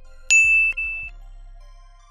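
Subscribe-button and notification-bell sound effect: a click, then a single bright, high-pitched ding about a third of a second in that rings for under a second.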